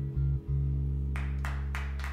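An acoustic guitar chord, with a second guitar, held and ringing steadily after the last sung line, briefly dipping about half a second in. Four sharp hits come over the last second.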